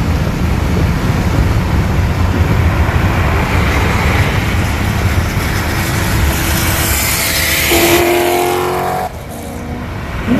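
Cammed LS3 V8 of a C6 Corvette at full throttle at highway speed, heard from inside the car under a heavy rush of wind. Its exhaust note stands out clearly about eight seconds in, and then the sound drops off suddenly a second later.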